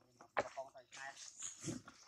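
Macaques gathered at a food tray making faint short calls, with a sharp click about half a second in.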